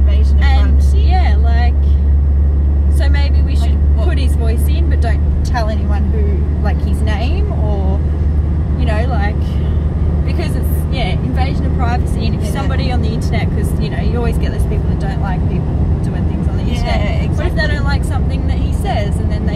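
Steady low road and engine rumble inside a moving car's cabin, under a woman talking. The rumble eases a little about halfway through.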